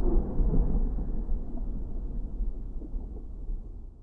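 Deep rumbling tail of a cinematic boom sound effect, dying away steadily until it fades out at the end.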